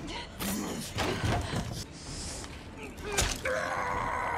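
Film fight sound effects: several sudden hits and scuffles with straining grunts, then a drawn-out groan starting about three and a half seconds in.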